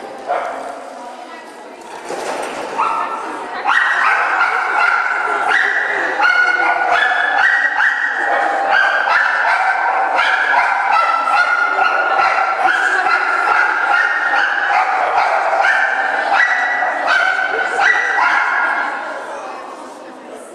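Small dog barking and yipping over and over in quick succession while running an agility course, getting louder about four seconds in and fading near the end.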